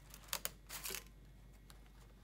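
Clear plastic filament spool being handled: two quick plastic clicks, then a short rustling scrape just before the one-second mark, and a faint click later.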